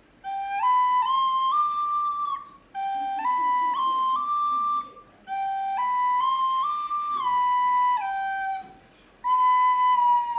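Plastic recorder played by a child: a simple tune in three short phrases of stepped notes, the first two climbing and the third climbing then stepping back down, with brief gaps between phrases. A new held note begins near the end.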